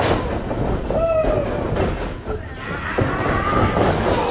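A wrestling ring being worked: a thud right at the start and another about three seconds in, with the ring rumbling and rattling under the wrestlers as they move against the ropes. Voices shout from the crowd.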